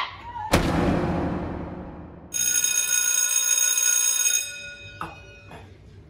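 A sharp crash about half a second in that dies away over about two seconds, then a bell ringing steadily for about two seconds, used as a transition sound effect.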